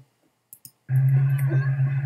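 Two quick clicks, then about a second in a steady, loud low hum with a fainter higher tone above it starts and holds.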